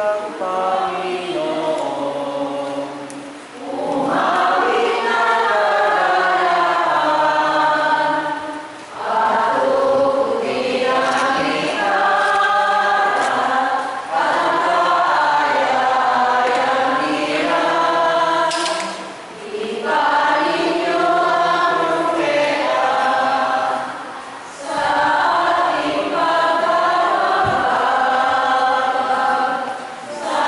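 A church choir singing a hymn in sustained phrases of about five seconds, with short breaths between them.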